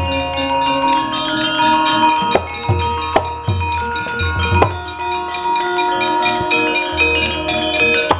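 Javanese gamelan ensemble playing: bronze metallophones ringing in quick, even strokes over sustained gong tones, with sharp knocks and a run of deep drum strokes in the middle.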